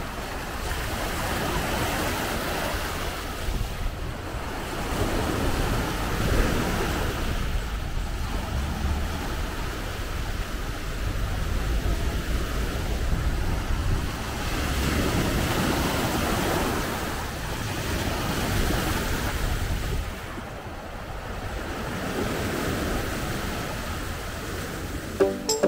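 Small sea waves washing up on a pebble and rock shore, the surf swelling and falling back every few seconds. Wind on the microphone adds a low rumble.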